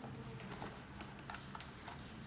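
Faint, scattered clicks and taps of cables and plastic connectors being handled on a desk, over a low steady hum.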